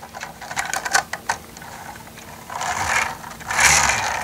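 LEGO toy truck and trailer rolling on plastic wheels across a smooth tabletop as it is pushed by hand, a rolling whir that grows louder in the second half. A few light plastic clicks come first as the trailer is handled.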